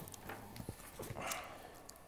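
A few faint, sharp clicks spaced irregularly, with a soft rustle about two-thirds of the way through, in an otherwise quiet pause.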